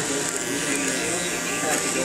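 Electric hair clippers buzzing steadily while cutting hair.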